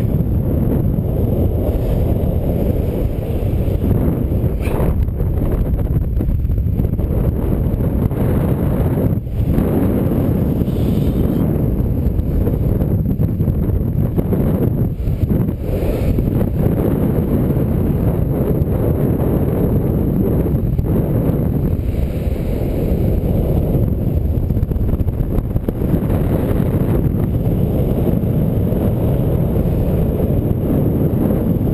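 Airflow buffeting a body-mounted camera's microphone during paraglider flight: a loud, steady low rumble of wind noise that dips briefly twice, around a third and halfway through.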